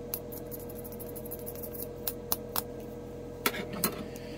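Light clicks and taps of plastic paint-test spoons being handled and set down on a food dehydrator's plastic lid, three quick taps about two seconds in and two more near the end, over a steady faint hum.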